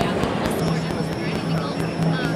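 Sonicware ELZ_1 synthesizer playing a low sustained note, heard dry without reverb; the note comes in about half a second in and holds steady.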